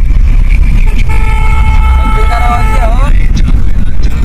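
A vehicle horn sounds one steady note for about two seconds, its pitch dipping as it ends, over the low rumble of a car driving.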